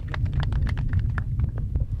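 Wind rumbling on a handheld microphone, with scattered irregular clicks and knocks of the microphone being handled as it is passed to the next speaker.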